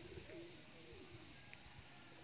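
Faint, low whining moan from a dog being poked with a stick, wavering up and down in pitch.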